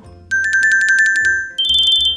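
An electronic two-note trill sound effect, pulsing rapidly. About one and a half seconds in, it jumps up to a higher, shorter trill.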